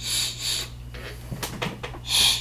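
Air hissing through the airflow holes of a Horizon Tech Arctic sub-ohm vape tank as it is drawn on in two short pulls, a fairly tight draw. A few small clicks follow after about a second.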